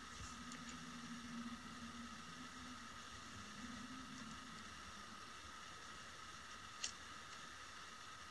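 Quiet room tone with a faint steady hum and one faint click near the end.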